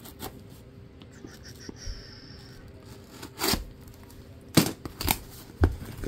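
Scissors working at a small cardboard shipping box, then a few short rips and scrapes as the cardboard is pulled open, the loudest in the second half.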